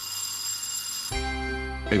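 Electronic doorbell ringing: a bright high tone for about a second, then a lower, fuller tone that rings on.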